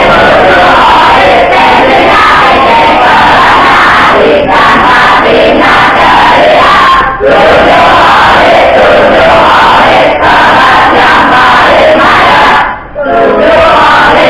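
A large group of students loudly chanting and shouting a class cheer (yel-yel) in unison. It comes in phrases with brief breaks between them, roughly every three seconds.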